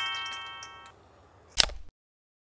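An editing sound effect: a quick rising run of bell-like chime tones, each note held and ringing out together before fading away within the first second. About a second and a half in comes a single sharp click, and then the sound cuts to dead silence.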